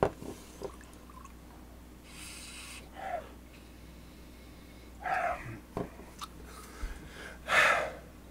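A person sniffing a glass of imperial stout: a few short, airy sniffs and breaths through the nose, with a couple of light knocks in between.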